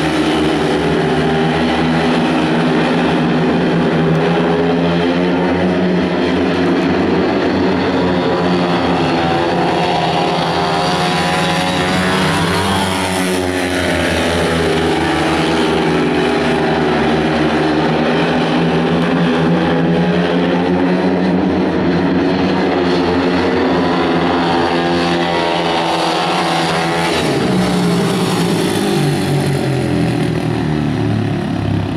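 Speedway motorcycles' 500 cc single-cylinder engines racing on a dirt track, loud and continuous, their pitch rising and falling as the riders accelerate down the straights and back off into the bends.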